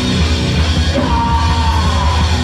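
A hardcore punk band playing live, loud: distorted guitar, bass and drums, with the singer yelling into the microphone.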